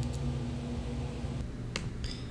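Steady low hum of room tone, with a faint click at the start and one sharp click about three-quarters of the way through.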